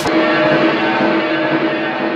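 Music: a busy swing-style passage stops and a final chord is held, ringing on and slowly fading.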